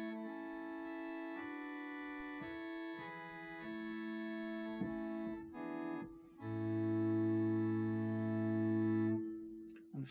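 The Viole d'Amour, a quiet and reticent string stop of the 1898 Hope-Jones pipe organ, sampled and played on a Prog Organ virtual pipe organ. It plays a short passage of slow, held chords. The last chord is longer, with a low bass note joining it about six and a half seconds in, and it stops about a second before the end.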